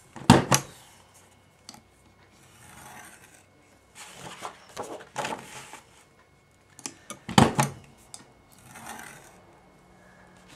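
Envelope punch board's punch pressed down with a sharp snap, about half a second in and again about seven seconds in. In between, a plastic bone folder scrapes along the board's scoring groove over the paper, and the sheet slides as it is turned.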